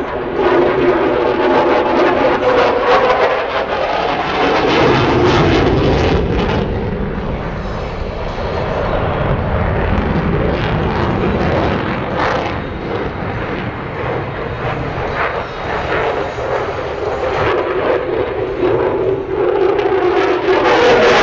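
Jet engine noise from a fighter jet flying a display pass, loud and continuous, with a deep rumble that swells in the middle and then eases off.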